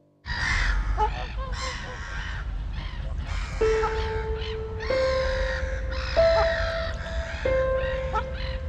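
Repeated bird calls over background music, starting suddenly a quarter second in. The music's held notes move to a new pitch about every second and a quarter, and a steady low rumble runs underneath.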